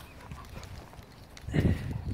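Footfalls and rustling on grass, as dogs and the person filming move across a lawn, getting louder with low thumping near the end.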